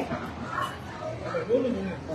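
People talking, with one louder, higher-pitched voice about one and a half seconds in.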